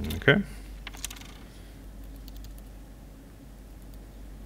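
Light typing on a laptop keyboard: a few scattered soft keystrokes, after a short loud vocal sound at the very start.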